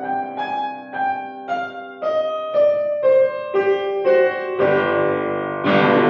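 Acoustic grand piano played solo: single melody notes struck about twice a second over sustained bass, swelling into louder, fuller chords near the end.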